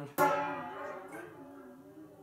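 Small waterphone, with water in its resonance chamber, struck once by hand just after the start: a sharp metallic hit followed by a ringing of many tones that fades away. Its pitches waver up and down as the water inside distorts the instrument's resonance.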